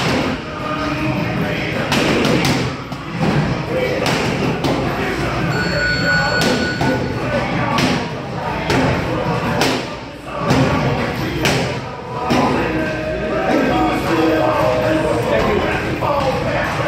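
Boxing gloves striking a trainer's focus mitts during pad work: a run of sharp thuds at irregular spacing, some in quick pairs.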